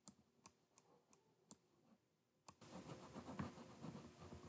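Faint computer-mouse clicks, about three a second, while a brush is worked on screen. About two and a half seconds in, a louder, steady background noise with a low rumble starts suddenly and carries on.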